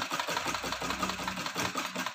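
Domestic straight-stitch sewing machine running steadily, stitching a side seam with a rapid, even clatter of the needle.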